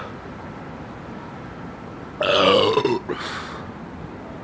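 A man burps loudly about two seconds in, one long burp falling in pitch, then a shorter second one, just after chugging a 40-ounce bottle of malt liquor.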